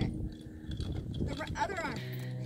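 Outdoor talk: a person's voice speaks briefly near the end, over low, irregular noise.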